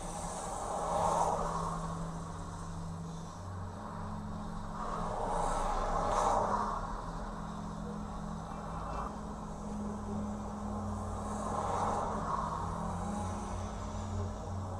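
Semi truck's engine idling with a steady low hum, heard through the dashcam's own audio, with passing road traffic swelling up and fading three times.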